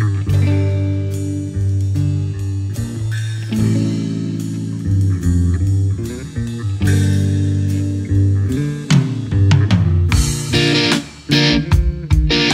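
Instrumental passage of a rock song: electric guitar chords and bass over drums. About nine seconds in the drums and cymbals come in harder, with a brief drop just after eleven seconds.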